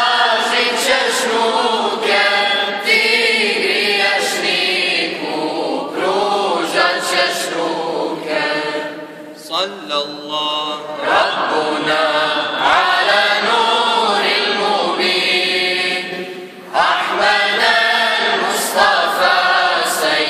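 Mixed male and female choir singing an unaccompanied Bosnian mevlud hymn in chant-like unison, with a brief break in the singing about three-quarters of the way through.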